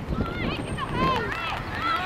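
Several voices shouting and calling over each other, from players and spectators at a soccer match.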